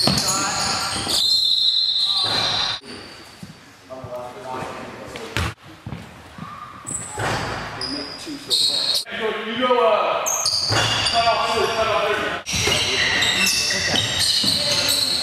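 Indoor basketball game: a ball bouncing on a hardwood court, sneakers squeaking and players' voices calling out, all echoing in a large gym. The sound changes abruptly several times as short clips are cut together.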